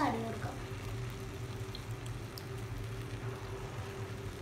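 Spaghetti and vegetables cooking in a steel pan: a faint steady sizzle over a constant low hum.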